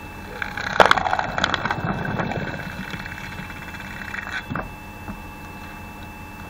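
The 5.5 kW electric motor of a homemade screw (cone) log splitter runs with a steady hum and whine while a log is pressed onto the spinning threaded cone. About a second in, the wood cracks and splits, with loud crunching and splintering for about two seconds, and another sharp crack comes later.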